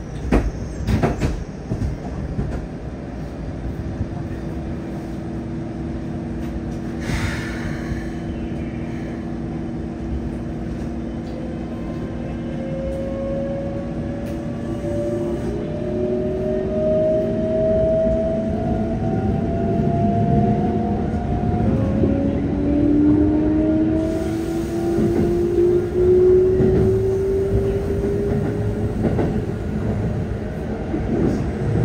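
Mitsubishi GTO-VVVF inverter of a Keikyu 600 series train heard from inside the car: a steady low whine, then several tones climbing in pitch in steps from about halfway on, the sound of the motors accelerating, over steady wheel and rail noise. A couple of knocks sound in the first second.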